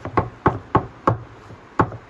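Kitchen knife chopping onion on a thick wooden log-slice board: a steady run of sharp knocks, about three a second, with a short pause just after the middle.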